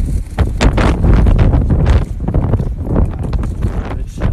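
Irregular scraping and knocking of a small hand tool digging into wet mud, over a strong low rumble.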